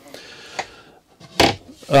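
A single short knock about one and a half seconds in, as the wooden lid of a battery compartment under a seat is closed, after faint handling rustle.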